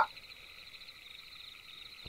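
Faint, steady high-pitched chirring of night insects, a background ambience bed with a fine rapid pulse.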